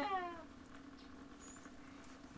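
A single short high cry falling in pitch, lasting about half a second at the start, followed by a faint steady hum.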